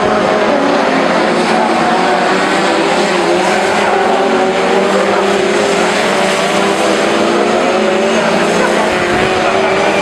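Several BriSCA F2 stock car engines running hard together as the cars race around a tight oval, their overlapping engine notes wavering as the cars pass and back off for the bends.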